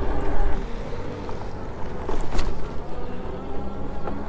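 Wind buffeting the camera microphone over the rumble of a Hovsco HovBeta folding e-bike's fat tires rolling on pavement, with a single click a little past halfway.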